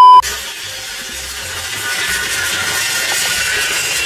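A steady 1 kHz test-tone beep of a TV colour-bars transition effect, cut off abruptly a fraction of a second in. It is followed by a steady, hissy background noise.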